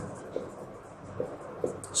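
Marker writing a word on a whiteboard: faint scratching of the tip with a few short taps.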